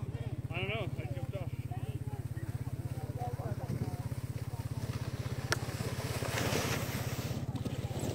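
Plastic sled hissing and scraping over packed snow as it slides up close, strongest from about six seconds in. Faint distant children's shouts come early, over a steady low, evenly pulsing rumble, and there is one sharp click about halfway through.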